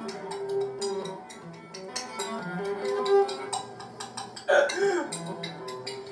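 Rapid clicks of a metal spoon tapping a jar, cut together in quick succession over music with steady held notes. A short vocal sound comes in about four and a half seconds in.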